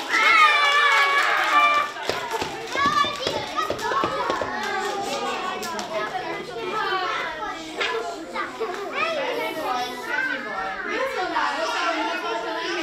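Many young children's voices talking and calling out at once, with loud, high-pitched calls in the first two seconds.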